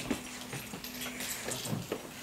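Metal communion trays and lids clinking and knocking as they are lifted and stacked on a table: a sharp knock just after the start and a few more near the end, over a faint steady low tone that stops partway through.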